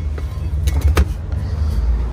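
A few short knocks and clicks as a heavy drilled-and-slotted brake rotor is handled on a workbench, over a steady low rumble.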